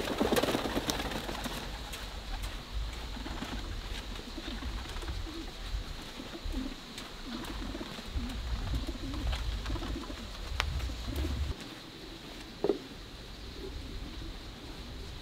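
A bird cooing in a run of repeated low notes, with a few sharp knocks, the loudest one near the end.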